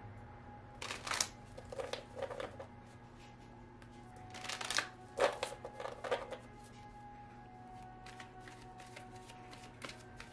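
A deck of oracle cards being shuffled and cut by hand: several short bursts of card rustling and riffling, the strongest about four to six seconds in.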